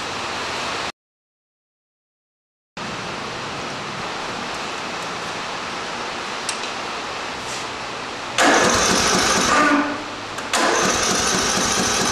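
Electric starter cranking a Briggs & Stratton single-cylinder overhead-valve mower engine in two spells, the first about eight and a half seconds in and the second about ten and a half seconds in, after a steady hiss. The valves have just been adjusted so that the engine spins over without locking up on the compression stroke.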